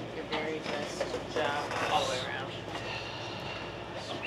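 Indistinct voices talking over steady background noise.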